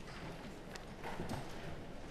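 Scattered footsteps and shuffling of people walking past in a crowded church, heard as faint, irregular knocks over quiet room noise.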